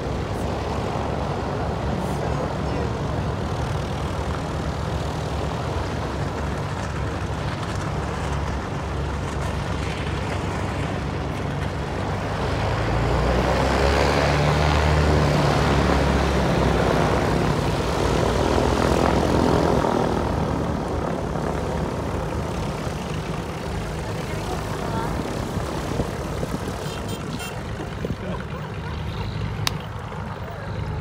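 Small propeller airplanes taxiing by, engines running steadily. The engine sound swells louder about halfway through as one passes close, then eases off.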